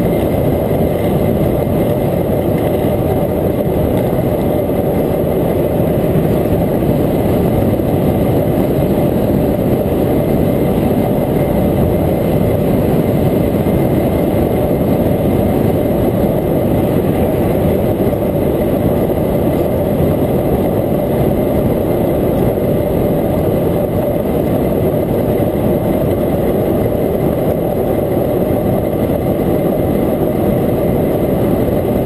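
Steady rush of wind buffeting a bike-mounted camera microphone, mixed with tyre and road noise, as an electric bicycle rides along at speed. A faint steady high tone runs underneath.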